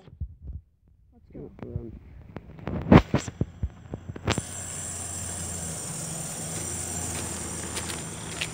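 Handheld camera knocks and thumps from the running camera-holder, with a brief vocal sound and one loud knock. About four seconds in, a steady shrill insect chorus starts suddenly and runs on.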